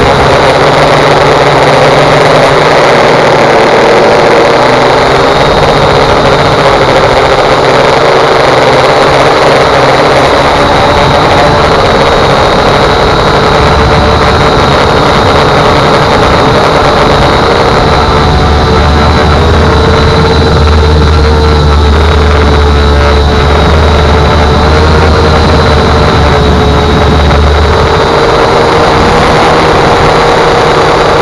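Electric motors and propellers of a multirotor drone running steadily, heard close up from its onboard camera: a constant hum whose pitch wavers slightly as the drone holds and adjusts its flight. A low rumble joins about halfway through and stops near the end.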